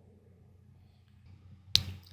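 Near silence, then one sharp click about three-quarters of the way through, followed by a faint hiss.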